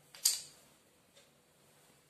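A single short clink from a miniature steel utensil being handled, about a quarter second in and fading quickly, followed by a faint tick about a second later.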